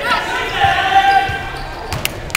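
A spectator's drawn-out shout, held at one pitch for about a second and a half, over a few thuds of a basketball and players' feet on a gym floor.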